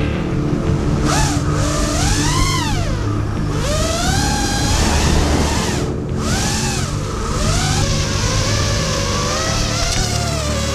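Motors of a 5-inch FPV racing quadcopter (Lumenier 2206 2350KV brushless motors on three-blade 5x4x3 props) whining, the pitch sweeping up and down again and again as the throttle is punched and eased through dives and gaps, with brief drops when it is cut.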